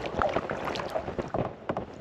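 Kayak paddle strokes in calm water: the blades dipping in, splashing and dripping, softening toward the end.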